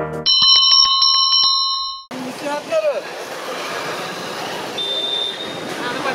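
A small bell trilling rapidly for about two seconds, then cutting off sharply. Busy street noise with voices follows, and a brief high steady tone sounds about five seconds in.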